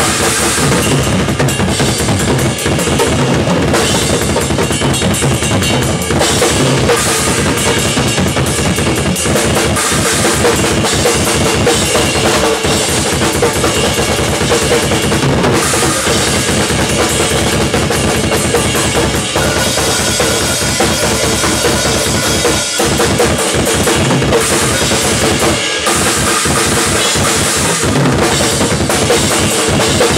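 Drum kit with Zildjian cymbals played hard and without a break: kick drum, snare and toms struck in fast, dense patterns under ringing cymbals.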